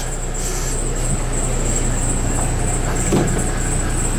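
Steady low hum under an even background hiss, with a faint high-pitched whine throughout; only a brief soft sound about three seconds in breaks it.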